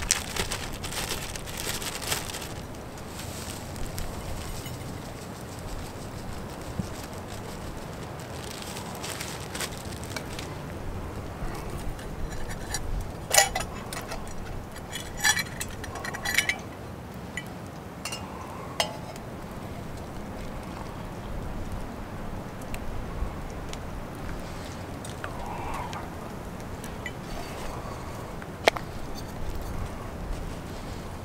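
A plastic pouch crinkling as it is handled in the first few seconds, then scattered light clinks and taps of metal camp cookware while French press coffee is made. A steady low rumble of wind runs underneath.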